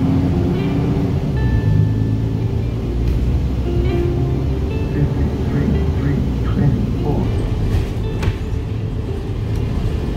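Steady low rumble of a bus's engine and tyres on the road, heard from inside the moving bus.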